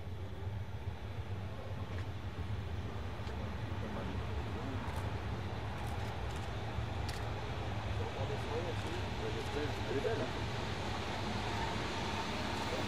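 DB Class 103 electric locomotive running light and slowly approaching, with a steady low hum that grows gradually louder as it nears.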